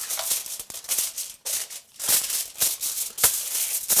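Aluminium foil crinkling and crackling in irregular bursts as hands press and fold it around a baking tray.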